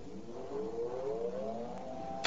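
An electrical whine from the high-voltage capacitor cabinet: several tones rise together in pitch and level off near the end, as the supply charges the capacitor bank toward its discharge.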